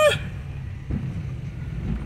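Car driving slowly over cobblestones, heard from inside the cabin: a steady low rumble of engine and tyres, with one light knock about a second in. A voice trails off at the very start.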